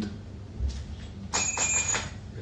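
A brief high ding: a steady ringing tone lasting about half a second, starting a little past halfway and cutting off suddenly.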